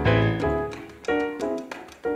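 Tambor repique, a candombe barrel drum, struck by hand among short, detached electric keyboard chords in a brisk rhythm, with a deep bass note under the first half-second.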